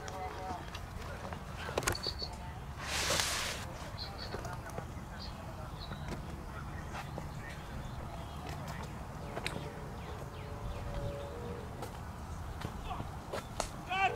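Open-air ambience: a steady low rumble with faint distant voices and a few scattered short clicks, and a brief burst of hiss about three seconds in.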